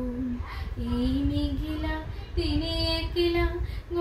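A woman singing a Bengali song unaccompanied, holding long sustained notes. Her pitch steps up about halfway through.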